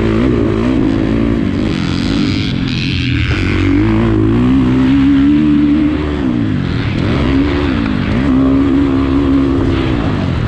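2019 Husqvarna FC350's single-cylinder four-stroke engine under riding load, revs rising and falling with the throttle and held steady for a second or two at a time. It is being lugged at low revs, "bogging it around", rather than revved out.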